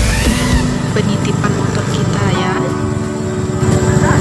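A small motorcycle engine running on a rough dirt trail, mixed with background music and voices.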